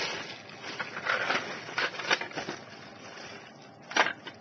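Plastic packaging crinkling and crackling as it is handled, with many small irregular clicks. It grows fainter toward the end, and a sharper click comes just before it stops.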